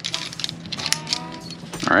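Metal clinking and clicking as locking carabiners and Petzl Micro Traxion progress-capture pulleys are handled at a climbing harness and their gates are locked, a quick run of small sharp clicks.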